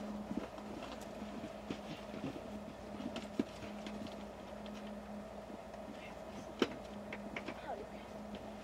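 Faint background sound with a steady low hum and scattered soft clicks and ticks, one sharper click about three quarters of the way through.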